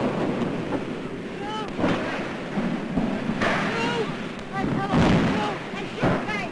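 Newsreel sound of the burning airship: a loud, rushing noise of fire with short shouted cries that rise and fall above it several times.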